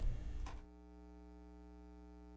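Faint, steady electrical mains hum, a low drone with many evenly spaced overtones, left after the studio sound drops out about half a second in.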